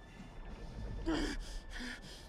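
A man breathing hard: two sharp, strained gasps, one about a second in and another near the end, over a low rumble.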